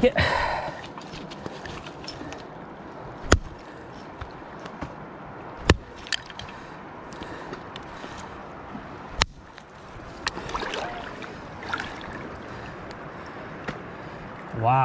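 Steady rush of flowing river water, broken by three sharp knocks spaced a few seconds apart.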